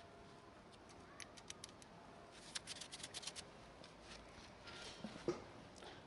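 Quiet handling noise while working under a scooter: two runs of light clicks and ticks, then a single sharper knock about five seconds in.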